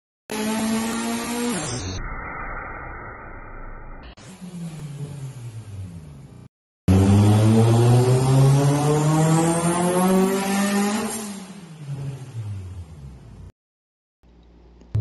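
Mitsubishi Lancer Evolution IV's turbocharged 4G63 four-cylinder running on a hub dyno in short joined clips. Revs fall away from high rpm, then after a brief cut a pull climbs steadily for about four seconds and the revs drop off again.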